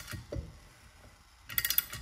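A 3/4-inch (19 mm) ratcheting wrench clicking in two quick runs, once at the start and again about a second and a half in, as it is swung back between strokes. It is turning the nut of a puller that draws a tightly pressed-in roller pin out of a Can-Am secondary clutch.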